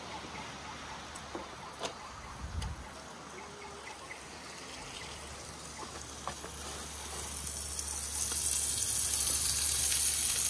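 Ribeye steak sizzling in a frying pan on a camp stove. The hiss stays steady and gets louder over the last few seconds, with a few faint clicks early on.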